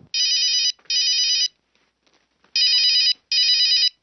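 A phone ringtone: a warbling electronic ring sounding as two double rings, each pair of short rings followed by a pause of about a second before the next pair.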